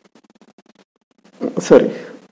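Speech only: after a quiet stretch, a man says "sorry" near the end.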